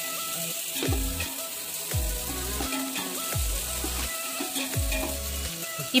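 Onions, tomatoes and whole spices sizzling in hot oil in a large aluminium pot as they are stirred with a slotted metal ladle. Background music plays over it, with a low sliding note recurring every second or so.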